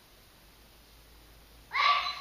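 Faint room tone, then a man's voice starts speaking near the end.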